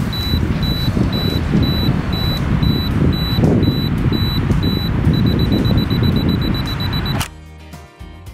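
Camera self-timer beeping about twice a second, then switching to rapid beeps for the last two seconds before the shot, over a low outdoor rumble. About seven seconds in the beeping and rumble cut off and quiet music takes over.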